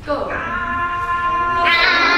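A high-pitched singing voice starts abruptly and holds one steady note, swelling louder and brighter near the end, as a world-music vocal-style example.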